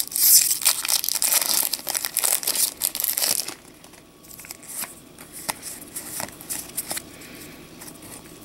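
Foil trading-card booster pack wrapper being torn open and crinkled, loud and crackly for about three and a half seconds. Then softer rustling with scattered light clicks as the pack is handled.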